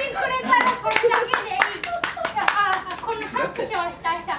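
A small audience clapping, scattered claps mixed with people's voices and laughter.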